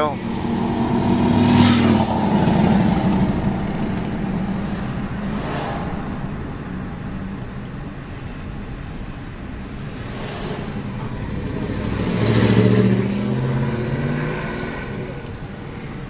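Car engine and road noise heard from inside the cabin while driving along a street, swelling twice: shortly after the start and again about three-quarters of the way through.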